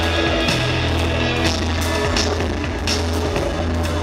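Live industrial rock band playing in an arena, heard from the audience: sustained deep bass and guitar over drum hits, with no singing.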